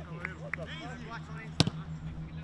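Players' voices calling out across a football training pitch, then a single sharp strike of a football being kicked about a second and a half in.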